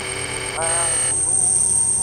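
Experimental improvised music: a female voice makes one short sliding vocal sound, rising then falling, just after half a second in, over held electronic drones that include a high thin steady whine.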